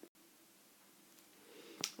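Near silence: faint room tone with a low hum, broken by a brief click at the very start and a soft breath and mouth click near the end as the voice is about to resume.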